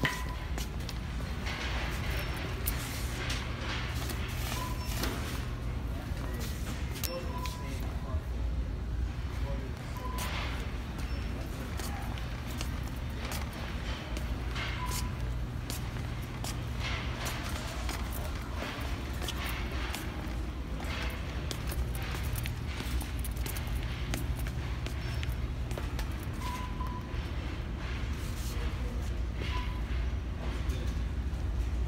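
Store ambience: background music and indistinct voices over a steady low hum. Irregular clacks and rattles from a pushed shopping cart and footsteps come through it, along with a few short beeps.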